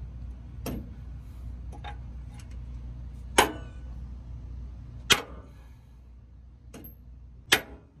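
Hammer blows on a new truck control arm, driving it into its frame mount: about six sharp metal strikes at uneven intervals, the three hardest ringing briefly.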